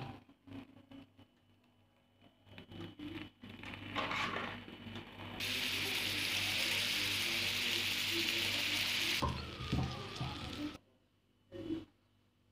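Butter sizzling on a stuffed paratha in a hot pan, a steady hiss of about four seconds that starts suddenly about five seconds in. Before it come a few light knocks and scrapes.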